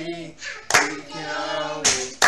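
Voices singing a slow song with long held notes, while hands clap in time: two sharp claps about a second apart.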